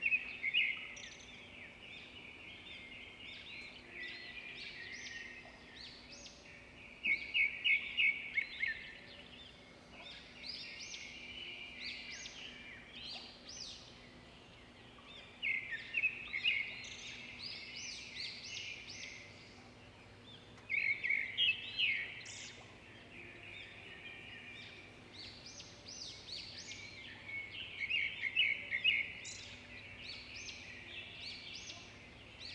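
A bird singing: five loud bursts of quick repeated notes, about one every six or seven seconds, with softer twittering in between.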